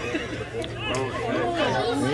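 Several people's voices talking and calling out over one another: spectator chatter at a football match.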